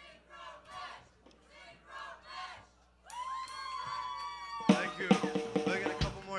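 Live rock band playing a short burst. A single held note rings from about halfway, bending slightly, then loud drum kit hits crash in with the rest of the band near the end.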